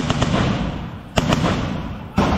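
Two loud bursts of gunfire, one at the start and one about a second later. Each is a quick rattle of shots followed by a long echoing decay.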